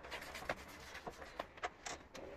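A damp polishing cloth rubbing wax polish into a leather boot: faint, short, irregular strokes and scuffs of cloth on leather.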